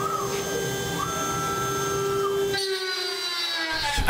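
Homemade CNC milling machine running: a steady spindle whine, with a stepper-driven axis move whose pitch rises, holds and falls back about a second in. About two-thirds through, the low rumble drops out and the remaining whine slides slowly down in pitch.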